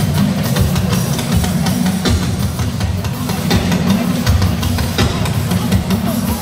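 Live church music driven by a drum kit, with frequent drum and cymbal hits over a heavy bass.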